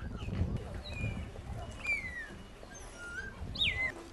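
Birds calling outdoors: a handful of short whistled chirps that slide up or down in pitch, the loudest a falling whistle near the end, over a low background murmur.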